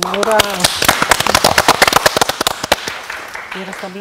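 A small group clapping in brief, scattered applause for a correct answer, with voices just before and after the clapping.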